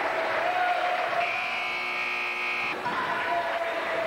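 Gymnasium scoreboard buzzer sounding once, a steady rasping tone lasting about a second and a half and starting about a second in.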